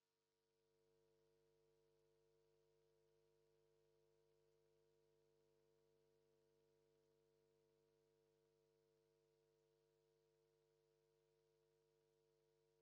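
Near silence: only a very faint steady tone, with no track or crowd sound.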